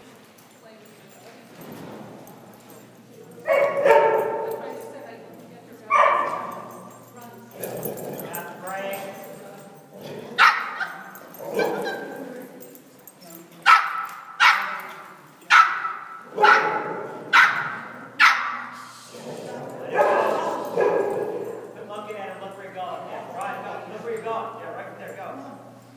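A dog barking repeatedly while running an agility course, a dozen or so sharp barks, coming about once a second in the middle stretch, each echoing in a large indoor arena.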